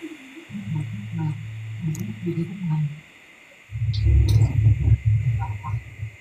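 A deep, low-pitched voice murmuring indistinctly, then a pause, then a louder deep rumbling sound from the second half on, heard over a steady faint hiss of the live-stream audio.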